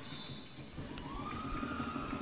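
Referee's whistle blown in a short blast to call a foul, over a low crowd murmur in the gym. About a second in, a second, lower steady whistling tone comes in and holds.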